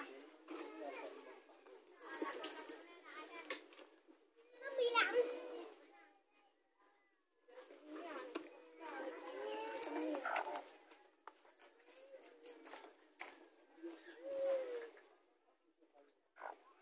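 A broody native hen giving low clucks and growls in her nest basin while eggs are slipped under her, in several short bouts, over faint background voices.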